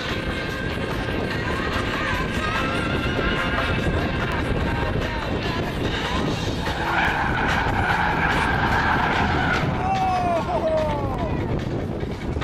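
Drift cars running hard on track, engines revving and tyres squealing as they slide. A long tyre squeal comes midway, and a few short rising-and-falling squeals follow near the end.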